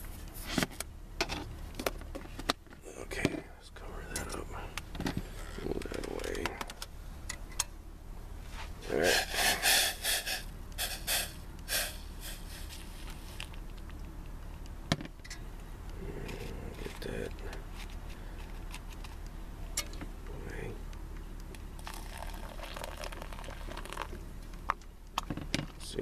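Handling clinks and knocks from a plastic spoon in a metal coffee can and a steel saucepan, with a short loud rattle about nine seconds in. Then comes the quieter sound of hot water being poured from the saucepan into a paper coffee filter set in a flower pot.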